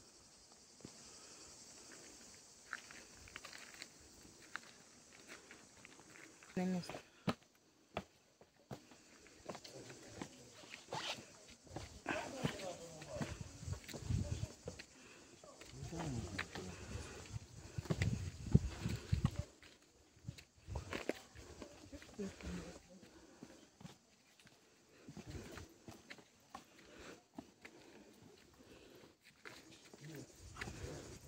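Footsteps scuffing and knocking on uneven stone steps as people climb, in an irregular, uneven pattern, with handling noise from the phone and now and then an indistinct voice.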